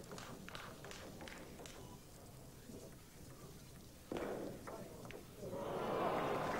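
Table tennis ball clicking sharply against bats and table during play, scattered clicks in the first two seconds and again about four to five seconds in. Near the end the crowd starts to applaud the point.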